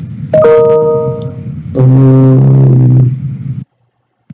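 A chime of several steady tones sounds about a third of a second in and rings for about a second. It is followed by a low held hum lasting nearly two seconds, and then the audio cuts out completely near the end.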